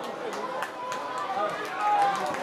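Voices of footballers and staff calling out on the pitch, heard through the field microphones, with a few sharp knocks in between.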